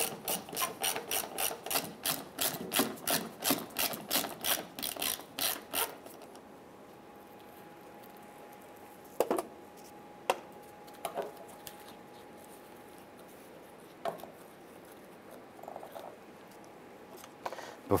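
Hand ratchet clicking rapidly, about four clicks a second, as the 8 mm bolts holding the fuel pump module's flange are spun out. The clicking stops about six seconds in, followed by a few light knocks from handling the bolts and parts.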